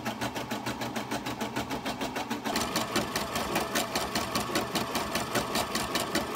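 Computerized embroidery machine stitching lettering onto fabric in a hoop, its needle running in a rapid, even rhythm. The sound grows louder and fuller about halfway through.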